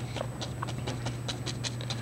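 A fan brush loaded with dark oil paint tapped quickly against canvas, about seven light taps a second, to lay in distant evergreen trees.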